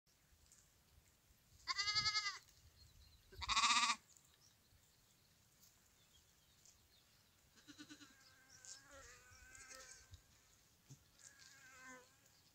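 Small livestock bleating: two loud, wavering calls about two and three and a half seconds in, then fainter calls from farther off in the second half.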